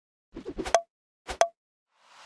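Short pop sound effects of an animated logo intro: a quick patter of small taps ending in a bright pop just under a second in, then a second pop about half a second later.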